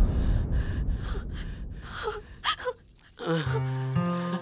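A loud dramatic music sting dying away, then a few short, sharp gasps about two seconds in, and soft background music with held notes coming in near the end.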